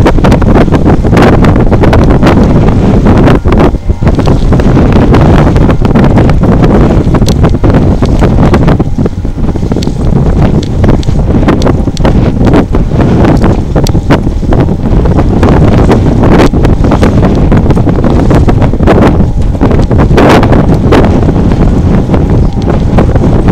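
Wind buffeting the camera's microphone: a loud, continuous rumble broken by frequent irregular gusts.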